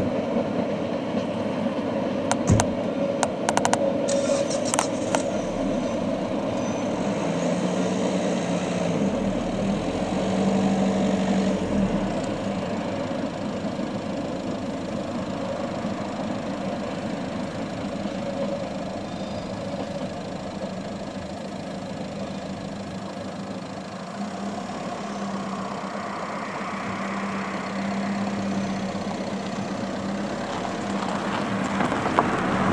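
Mallet 030+030 steam tank locomotive n° 403 hauling its train, heard from a distance as a steady rumble, with a low hum that comes and goes. A few sharp clicks sound in the first five seconds.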